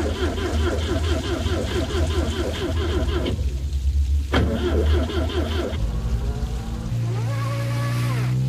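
Car engine labouring in a steady pulsing rhythm, with a brief dip about three seconds in, then revving up and down in pitch near the end: a car stuck in soft mud, its wheels spinning as the driver keeps trying.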